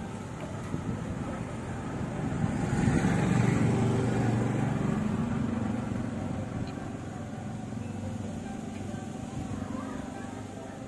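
A motor vehicle's engine going past on the road, swelling about three seconds in and slowly fading away.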